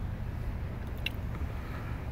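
Steady low rumble of a car driving slowly, heard from inside the cabin, with a light click about a second in.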